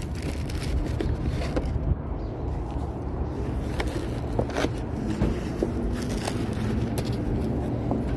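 Paper food bag and wrapper being handled, with short crinkles and taps, over a steady low background rumble.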